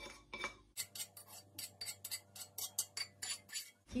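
A spatula scraping and clicking against a non-stick frying pan and a glass bowl as fried onions are scraped out of the pan: a quick run of short clicks and scrapes.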